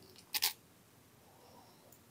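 A brief sharp click about half a second in, from the oscilloscope probe's metal tip being moved onto the next pin of the ZX81's ULA chip; otherwise a quiet room.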